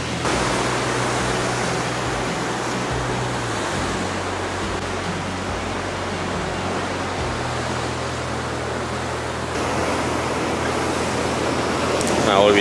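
A steady, even rushing noise of breaking sea surf, with soft background music underneath whose low held notes change about every three or four seconds.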